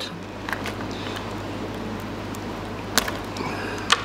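Steady low electrical hum and room noise, with small handling sounds of a crab bait being worked on a plastic cutting board and a sharp click about three seconds in.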